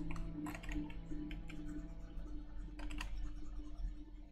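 Computer keyboard keys clicking in an irregular string of presses, over quiet background music with a held low note.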